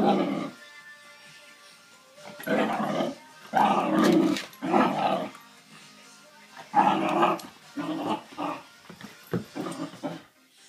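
Two dogs, one a border collie, play-fighting, with short loud bursts of growling and barking, about eight in all, each under a second.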